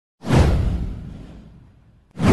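A single whoosh sound effect for an animated news intro, with a deep low rumble under it. It starts suddenly just after the beginning and fades away over about a second and a half.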